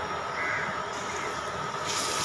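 A faint bird call about half a second in, over a steady background hiss. Just before the end a louder frying hiss comes in.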